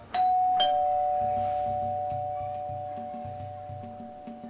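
Two-tone doorbell chime: a higher 'ding' then a lower 'dong' about half a second later, both ringing on and slowly fading. Soft background music with a gentle beat runs underneath.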